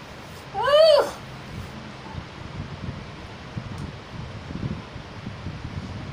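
A single cat's meow about a second in, one short call that rises and then falls in pitch.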